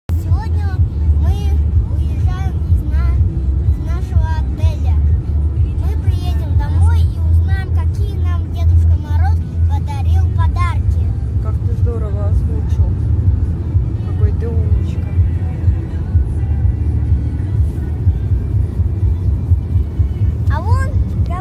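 Steady low road and engine rumble inside a moving car's cabin, with a voice singing or talking over it through the first half.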